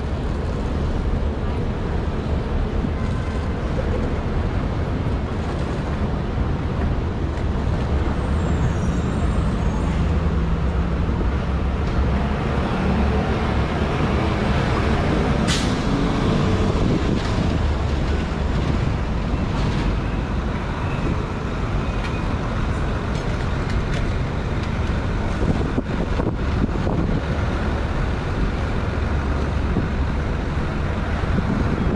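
Steady city street traffic: engines and tyres of cars, trucks and buses, heavy in the low rumble, with one sharp click about halfway through.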